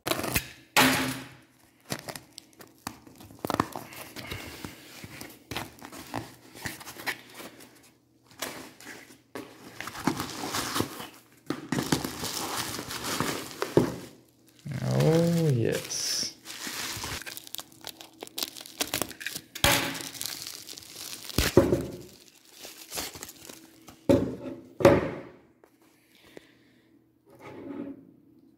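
A taped cardboard parcel is opened by hand: packing tape is torn off, and the cardboard and packing material are crumpled and rustled. The sound comes in irregular bursts, with light knocks as the box and its contents are handled.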